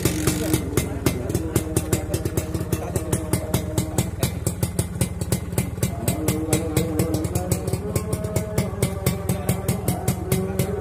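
Suzuki RK Cool 110 RS single-cylinder two-stroke engine idling, a steady low rumble broken by sharp even pulses about five times a second.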